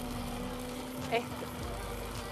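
Hand-held immersion blender running steadily, a constant motor hum with a low whine.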